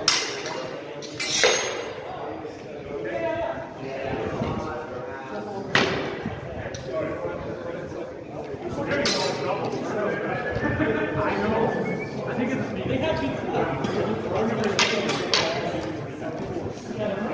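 Singlestick sparring: the sticks make about six sharp, echoing clacks scattered through, two in quick succession near the end, over voices talking in the background.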